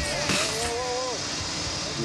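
Street traffic noise with a vehicle running. Near the start, a person's drawn-out, wavering vocal sound lasts about a second.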